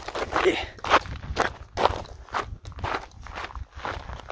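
Footsteps on loose rocky desert gravel, walking at about two steps a second.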